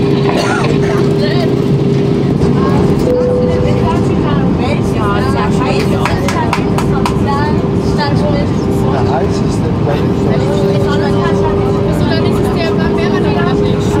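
Steady cabin noise of an Airbus A319 airliner in descent: engine and airflow rumble with a steady hum running through it, and faint passenger voices underneath.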